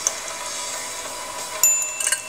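A single high, bright chime near the end, ringing on briefly as two clear steady tones, over a faint steady hum.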